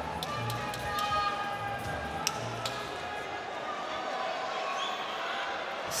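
Arena background music with a low beat about once a second under crowd chatter, with a few sharp claps or knocks.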